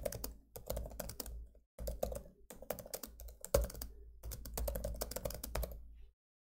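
Typing on a computer keyboard: quick runs of keystrokes broken by a few brief pauses.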